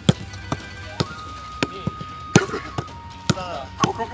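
A football being trapped and passed back and forth in a quick stop-and-kick passing drill: sharp ball contacts about twice a second, around eight in all. Background music with held notes runs underneath.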